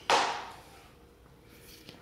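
One stroke of a chef's knife cutting through a fish fillet onto a plastic cutting board: a sharp hit at the start that fades over about half a second.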